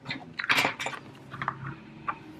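Paper and card being handled on a desk: a few short rustles and taps, the busiest about half a second in, then smaller ones.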